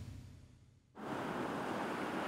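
The tail of a music sting fades out to near silence, then about a second in a steady rushing ambient noise cuts in and holds at an even level.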